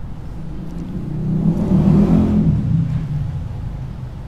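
A motor vehicle's engine passing by: a low hum that grows louder to a peak about two seconds in and then fades away.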